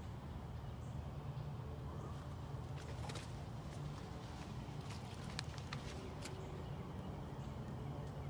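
Footsteps on a leaf-littered forest floor, a scatter of light crackles and snaps in the middle few seconds, over a steady low rumble.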